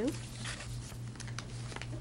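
Sheets of paper rustling and shuffling on a table, with a few short crinkles, over a steady low electrical hum.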